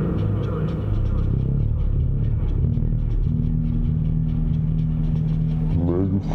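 Modular synthesizer music: wavering synth tones in the first second give way to a steady low drone held from about two and a half seconds in, over a fast ticking pulse.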